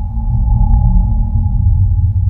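Opening soundtrack of a promotional video: a deep, steady rumble with a sustained high drone tone held above it, starting suddenly.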